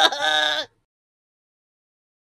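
A woman's high-pitched laugh, lasting under a second, then the sound cuts off suddenly to dead silence.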